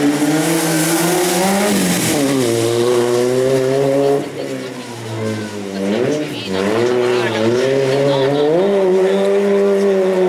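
Citroën Saxo race car's engine revving hard through a cone slalom. The note climbs and drops several times as the driver lifts off and gets back on the throttle around the cones, and it is quieter for a couple of seconds in the middle as the car pulls away.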